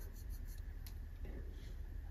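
Faint rubbing and a few light clicks as makeup products are handled and swatched on the skin, over a low steady hum.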